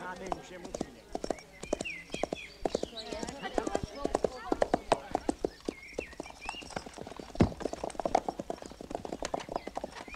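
Horse's hooves clip-clopping as a horse is walked in, a long run of irregular hoof strikes with one heavier thud about seven seconds in.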